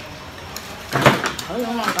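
Chopsticks and spoons clicking against ceramic bowls and plates at a meal, with a louder knock about a second in and voices talking.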